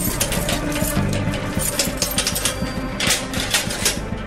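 Metal chain and padlock rattling and clicking against steel cell bars as a jail door is unlocked, over dramatic background music with low sustained tones.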